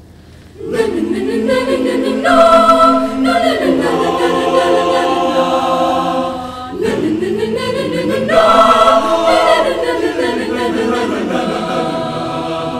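Mixed school choir singing a cappella, coming in together loudly about a second in. Two similar phrases with sliding, swooping pitches, the second starting after a short dip near the seven-second mark.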